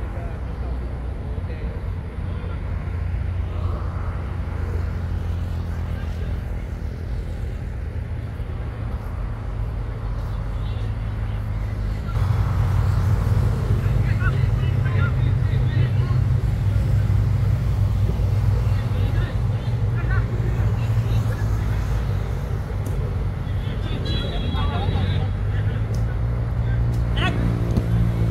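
Outdoor football-pitch ambience: faint shouts of players over a steady low rumble, which grows louder about twelve seconds in.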